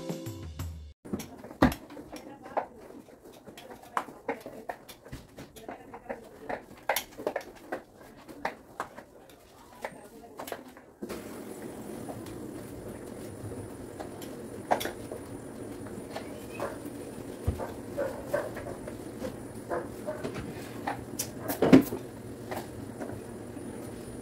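Spin mop worked over a ceramic tile floor: scattered clicks and knocks of the mop head and handle, with light steps. About halfway through a steady low hum sets in under them.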